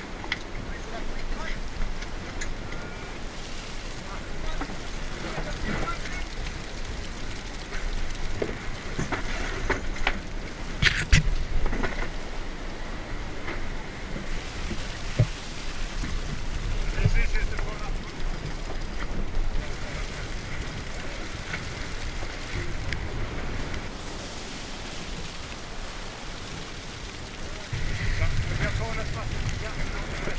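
Wind and water rushing past a Volvo Ocean 65 racing yacht sailing fast in rough seas, with spray spattering on deck and a few sharp knocks, the loudest about eleven seconds in. The rush grows louder and deeper near the end.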